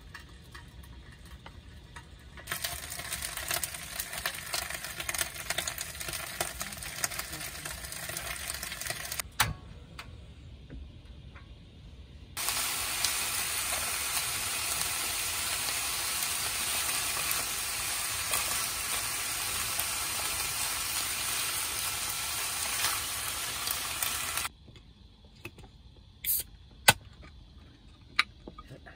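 Food sizzling as it fries in a foil-lined pan, in two stretches: a first about 2.5 s in, and a louder, steady sizzle from about 12 s in as thin-sliced beef is stir-fried with chopsticks, stopping abruptly about 24 s in. A couple of sharp clicks near the end.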